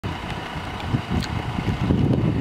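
Wind buffeting the microphone: an uneven, gusty low rumble, with a few faint clicks.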